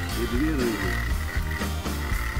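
Frogs croaking, with a thin steady high note joining in about halfway through.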